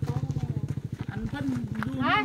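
A small engine running steadily, with a rapid, even low pulse, under a person's voice.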